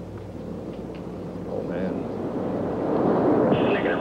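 Space Shuttle solid rocket boosters and main engines climbing after liftoff: steady rocket exhaust noise that swells louder over the second half.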